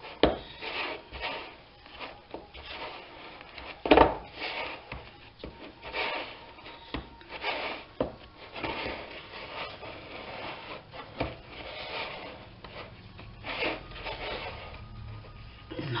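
Silicone spatula scraping and pressing quark and flour around a ceramic bowl, working them into a dough: a run of irregular scraping strokes about a second apart, with one louder knock against the bowl about four seconds in.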